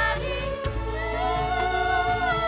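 Women singing a campursari melody together through a PA, with wavering held notes, over a band with keyboard and deep sustained bass notes.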